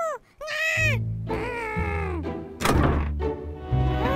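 A cartoon character's high-pitched straining cries over background music: two short rising-and-falling ones, then a longer falling one. A thud comes about two and a half seconds in.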